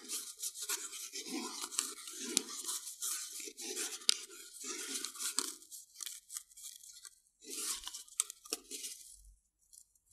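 Crochet cotton thread being wound around an inflated balloon: an irregular rubbing and scratching of thread and fingertips over the taut rubber, dying away in the last couple of seconds.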